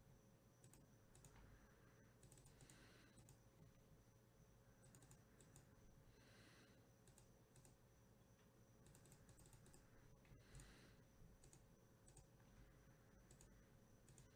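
Faint, scattered clicks of a computer keyboard and mouse being used, over near-silent room tone.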